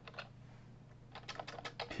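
Computer keyboard typing, faint: a single keystroke shortly after the start, then a quick run of keystrokes in the second half, over a low steady hum.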